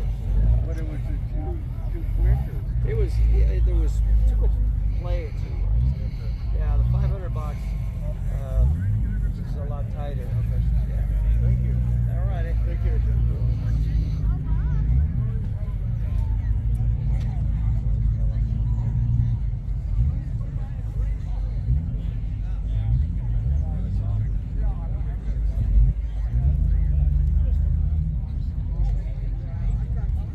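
Background chatter of several people talking over a steady low rumble of an idling car engine.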